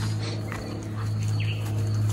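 Soft footsteps of a man and a German Shepherd walking on grass, under a loud steady low hum. A short high chirp sounds about one and a half seconds in.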